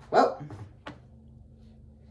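A short, loud, bark-like yelp from a man's voice, followed by a sharp click just before a second in.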